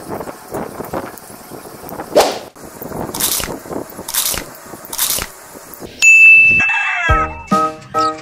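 Edited-in sound effects: a few short, noisy bursts over the first six seconds, then a bright ding about six seconds in, leading into a music tune of short separate notes.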